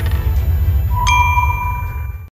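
Logo sting sound effect: a deep low drone, then a bright metallic ding about a second in that keeps ringing.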